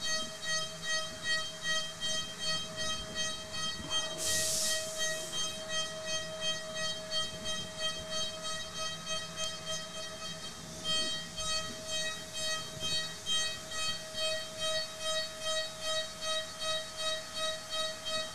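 High-speed CNC milling spindle at 38,000 RPM, its end mill roughing an aluminium block with a dynamic toolpath. It gives a steady high whine, and the cutting noise swells and fades about twice a second as the cutter engages the material. A brief hiss comes about four seconds in.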